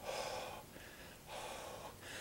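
A man blowing out two long breaths through his open mouth, each about half a second, puffing his breath out into the cold air.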